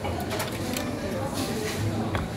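Restaurant background: a low murmur of voices with several light clicks and clinks of tableware.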